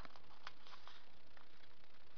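Faint handling of a paper label sheet: a few small ticks and light rustles as the backing paper is peeled off the sticky label, over a steady low background hiss.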